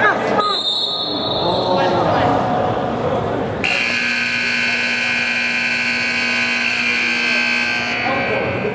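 Arena scoreboard buzzer sounding one long steady blast of about four seconds, starting about halfway through and cutting off abruptly, marking the end of a period of play.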